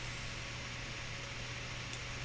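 Steady background hiss with a constant low hum underneath: room tone.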